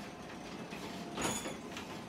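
Sectional overhead garage door rolling up on its tracks, with a steady mechanical noise that grows briefly louder just over a second in.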